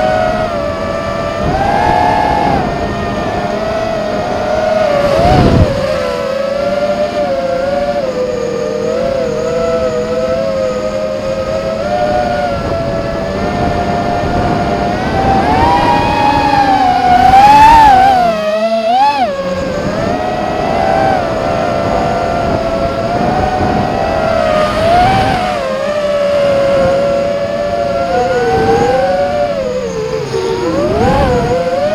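Electric motors and propellers of a small camera drone whining steadily, the pitch wavering up and down as the throttle changes, with a brief dip and climb about two-thirds of the way through.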